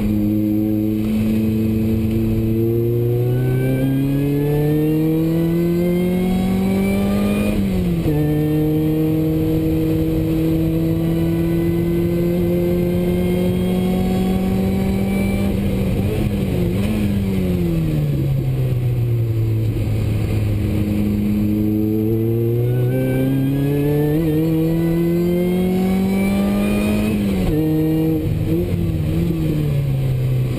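Opel Speedster Kompressor's four-cylinder engine heard inside the cabin at speed: revs climb to a gear change about eight seconds in, then hold steady. Around the middle the revs fall as the car slows, then climb again to another drop in revs near the end.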